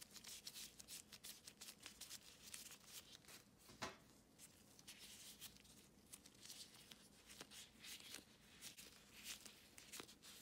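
Faint crinkling and rustling of disposable plastic gloves as hands work a ball of dough, with one louder click a little under four seconds in.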